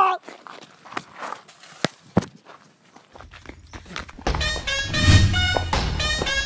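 A few scattered footsteps and scuffs, then background music with a bass line starts about four seconds in and becomes the loudest sound.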